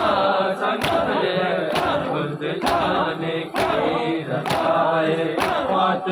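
A crowd of men chanting a noha together, with sharp chest-beating strikes (matam) landing in time with the chant a little under once a second.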